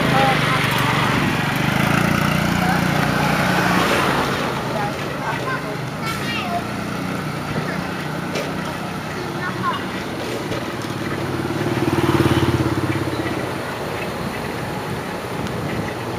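Street traffic with small motorbike engines passing, one running through the first few seconds and another louder one about twelve seconds in, over a steady street hum with snatches of voices.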